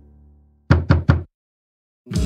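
Three quick knocks on a door, as the last of the background music fades out.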